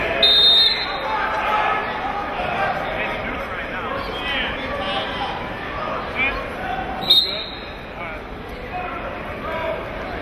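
A referee's whistle blows sharply once at the very start and again briefly about seven seconds in. Between the two blasts spectators and coaches shout and talk, echoing in a gym.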